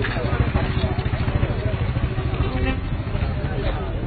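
Crowd voices talking over one another, with a motorcycle engine running close by as a steady low rumble.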